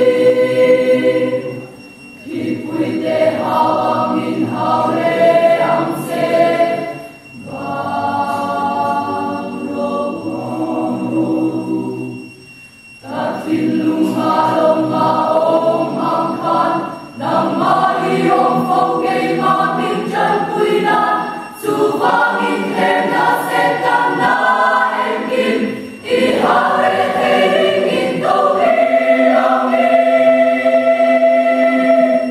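A mixed choir of young men's and women's voices singing a hymn in parts, in phrases of a few seconds each separated by brief breaks.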